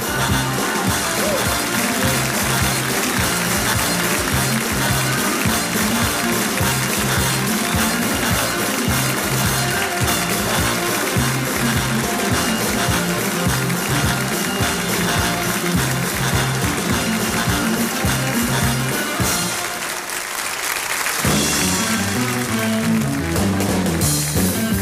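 A live band plays out the end of a song over a repeating bass line, with applause from the audience. The music breaks off about 20 seconds in, and the band strikes up a new number shortly after.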